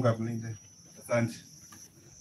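A man speaking into a microphone: the tail of a phrase at the start and one short syllable about a second in, over a steady high-pitched insect drone.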